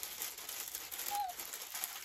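Wrapping paper crinkling and rustling as a wrapped parcel is carefully unwrapped by hand.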